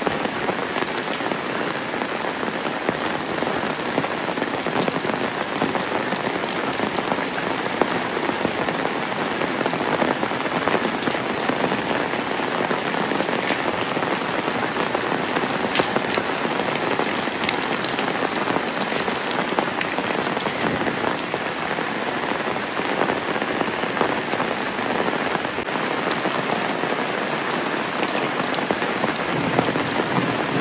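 Steady rain falling on roofs, leaves and a wet paved lane: an even hiss with a dense patter of individual drops ticking through it.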